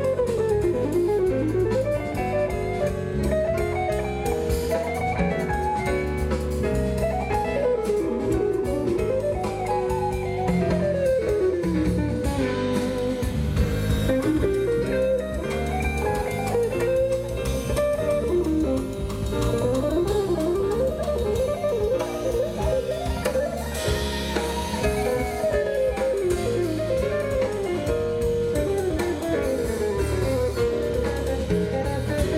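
Live jazz band playing an instrumental passage: a guitar carries a melodic line of quick rising and falling runs over bass and drum kit.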